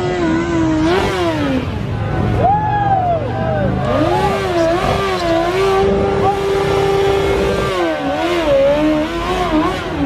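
Yamaha YZF-R1 sport bike revving hard during a burnout, its engine note rising and falling again and again, then held steady and high for about two seconds near the middle before dropping and swinging again.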